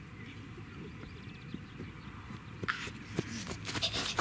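Quiet outdoor background, with a run of light clicks and knocks that grows busier in the last second or so.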